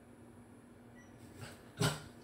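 A Shetland sheepdog lets out one short, loud woof near the end, after a softer sound a moment before.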